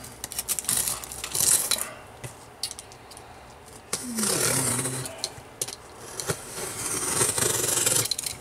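Utility knife slitting the packing tape along the seams of a cardboard box: repeated scraping, rasping and clicking of blade, tape and cardboard in several strokes.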